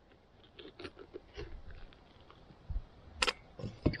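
Spoon scraping and scooping wet seeds and stringy pulp out of the inside of a hollowed pumpkin: a run of soft scrapes and small clicks, with two sharper knocks about three seconds in and near the end.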